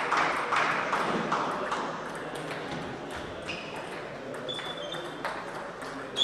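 Table tennis ball clicking off bats and tables in quick strikes, echoing in a large sports hall, with voices in the background.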